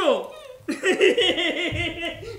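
One person's voice: a short exclamation sliding down in pitch, then, under a second in, a run of quick, rapid laughing pulses, about six or seven a second.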